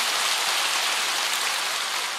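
Large congregation applauding steadily.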